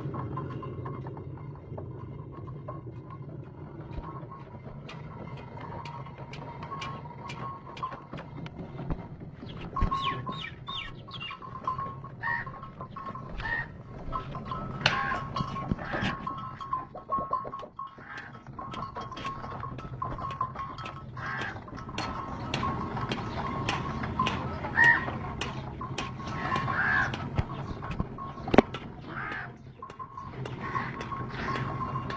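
Ox-driven stone flour mill turning, with irregular clicks and knocks and a thin steady squeak-like tone that comes and goes over a low hum. A few short high calls are mixed in.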